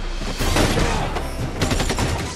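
Gunfire over a music score: scattered shots, then a quick run of shots in the second half.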